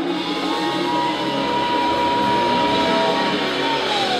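Live band playing, with one high note held steady for about three seconds that slides down in pitch near the end.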